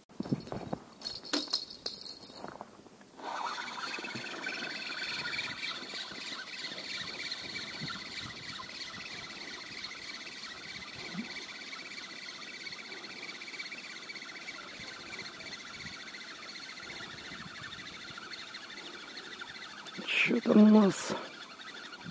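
Spinning reel on a feeder rod being cranked, a steady whirr of the reel's gears and line winding on, starting about three seconds in after a few knocks and clicks as the rod is lifted from its rest. A short vocal sound from the angler comes near the end.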